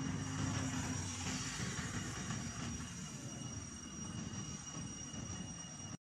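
A low, steady rumble with thin, constant high-pitched tones above it.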